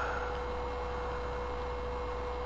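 Steady electrical hum with a constant single pure tone over faint hiss, unchanging throughout; no other sound stands out.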